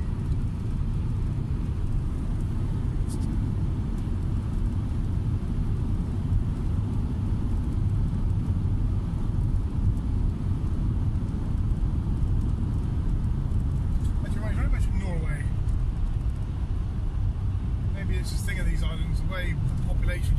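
A moving vehicle's steady low road and engine rumble, heard inside the cabin.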